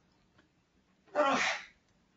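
A single short, breathy burst from a person about a second in, lasting about half a second.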